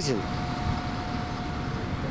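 Steady low rumble of street traffic, with a faint thin steady whine from about half a second in.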